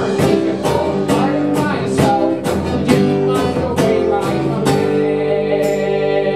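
Live acoustic guitar strummed with a drum kit keeping a steady beat, sharp hits landing about twice a second.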